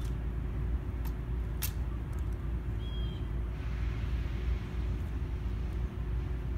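Steady low outdoor rumble, with two sharp clicks about a second and a second and a half in as the guard's M14 rifle is handled back after inspection. A short bird chirp comes about three seconds in, and a soft hiss follows for a couple of seconds.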